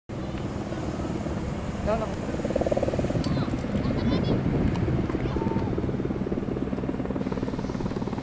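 Water-bombing helicopter's rotor beating steadily and rapidly, with faint voices in the background.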